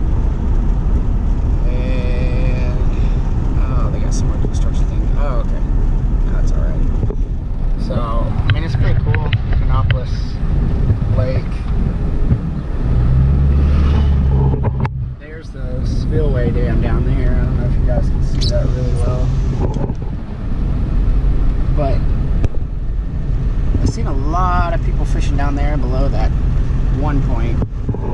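Ford F-250 pickup driving, heard from inside the cab: a steady low engine and road rumble. A deeper hum swells for about two seconds around the middle, then the level dips briefly.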